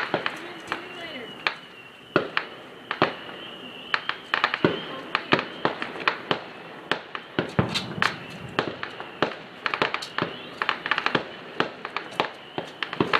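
Firecrackers popping: many sharp cracks at irregular intervals, some coming in quick strings of several.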